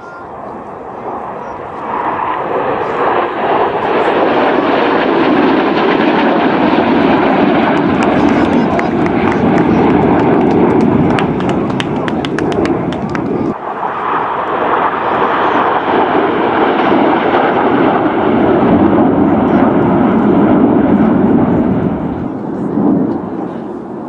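Twin turbofan engines of a formation of MiG-29 fighters in a display pass: a loud, steady jet roar that builds over the first couple of seconds, drops off suddenly a little past halfway, then swells again. A run of sharp clicks is heard in the middle, just before the drop.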